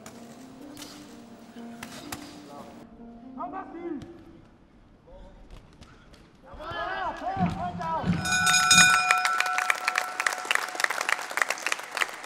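Music with voices in the first half, then about four seconds of loud, rapid ringing strikes that start about eight seconds in.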